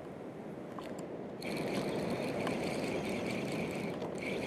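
Spinning fishing reel whirring steadily, starting about a second and a half in, with a faint click or two before it.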